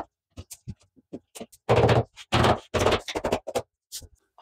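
Laminate floor planks being fitted and pressed into place by hand: a run of short knocks and clicks, with a few longer rubbing sounds from about halfway through.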